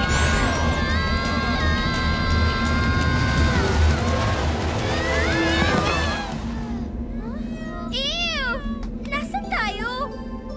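Cartoon music and effects: a deep rumbling whoosh with rising sweeps and held tones, which drops away about six seconds in. Then come wavering, warbling cartoon cries, one near eight seconds and a shorter one near the end.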